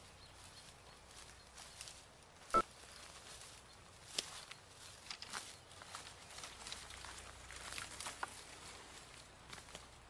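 Footsteps crunching through dry leaves and twigs on a woodland floor, with scattered crackles of brush underfoot and one sharp snap about two and a half seconds in.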